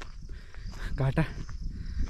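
A man's voice speaks briefly about a second in, over a steady high drone of insects and a low rumble.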